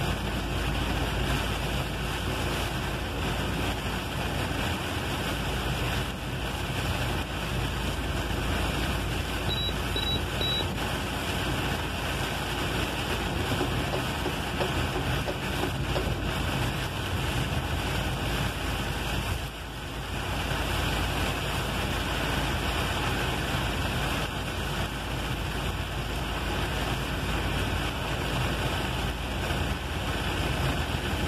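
Steady drone of a truck driving in heavy rain, heard from inside the cab: engine running under the hiss of tyres on the wet road and rain on the windshield.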